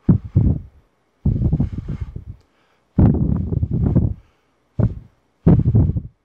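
Breath blown in puffs straight into an Arcano ARC-MICAM electret shotgun microphone with its foam windscreen removed, giving loud, deep wind-buffeting blasts on the capsule. About six blows come one after another, from brief puffs to ones lasting over a second.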